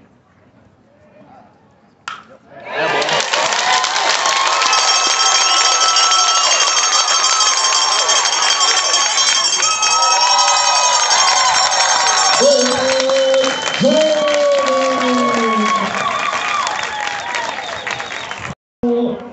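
A sharp crack of a bat hitting the ball about two seconds in, then a crowd of baseball spectators cheering and shouting loudly, with single voices yelling out above it in the later seconds.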